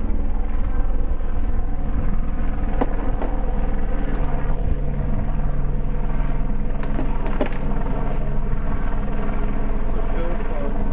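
Helicopter circling overhead: a steady, loud, low rotor and engine drone that goes on without a break.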